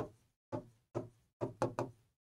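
A pen tapping against a writing board while letters are written: about six short knocks, the last three close together near the end.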